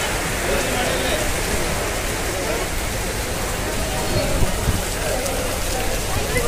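Heavy monsoon rain falling steadily and pouring off a roof edge.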